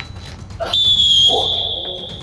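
Referee's whistle blown in one long blast of just over a second, starting with a slight waver, signalling the end of a one-minute timed push-up round.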